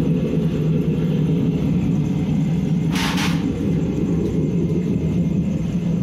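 Home-built waste-oil burner running with its electric air blower: a steady low rumble of the forced-draught flame and fan. A brief hiss comes about three seconds in.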